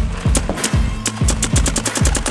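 Background music with a steady, heavy electronic drum beat and bass, over a rapid, quickening string of sharp cracks from a paintball marker firing.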